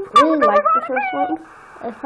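A high voice sliding sharply up and down in pitch, somewhat like a meow, followed by a brief soft hiss.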